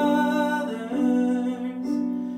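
Casio Privia digital piano playing slow sustained chords, a new chord struck about a second in and left to ring and fade.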